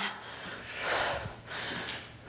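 A woman breathing hard from exercise exertion during dumbbell lunges, heard as two breathy swells close to the microphone, the stronger one about halfway through.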